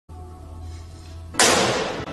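Faint low music drone, then a sudden loud crash about a second and a half in that dies away over half a second.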